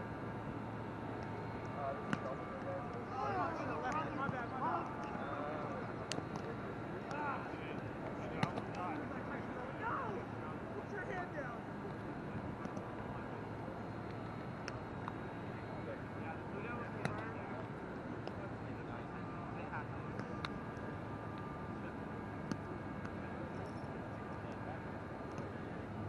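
A roundnet game: players' voices call out indistinctly a few times in the first half, with a few sharp slaps of the ball being hit, scattered irregularly, over a steady background hum.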